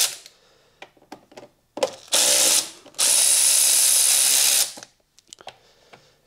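A cordless power tool spinning a socket on a long extension to undo fuse-box fixings. It makes two runs, a short one about two seconds in and a longer one from about three seconds to nearly five, with light clicks and taps between them.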